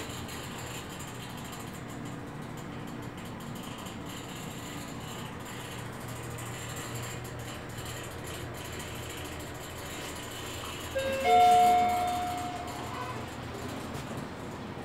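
Mitsubishi passenger lift descending with a steady low hum inside the car, then its arrival chime about eleven seconds in: a short lower note followed by a louder bell-like tone that rings and fades.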